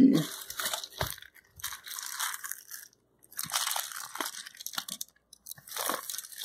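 A small mailing envelope being torn open and handled by hand, crinkling and ripping in four or five short bursts separated by brief pauses.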